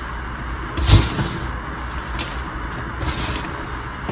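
Hands crushing and squeezing powdery gym chalk and broken chalk slabs, giving soft crunches and crumbling crackles; the loudest crunch comes about a second in, with smaller ones later.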